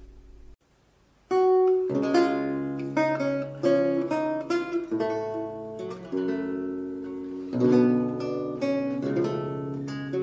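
Solo lute, plucked: after a brief near-silence, a melody with chords begins about a second in, each note starting sharply and ringing away.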